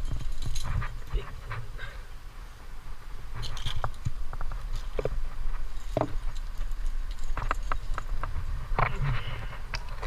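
Leaves and branches brushing and rustling against a helmet-mounted camera, with scattered clicks and scrapes of hands, shoes and climbing gear on rock, over a low rumble on the microphone.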